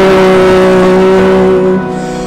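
A responsorial psalm being sung: one voice holds a long, steady note, which drops away near the end.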